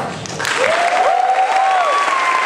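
An audience applauding as a song ends, with the applause swelling in about half a second in. Several long whistles from the crowd glide up and down over the clapping.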